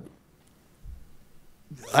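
A quiet pause in a man's speech, broken by one faint low thump about a second in. His voice comes back near the end.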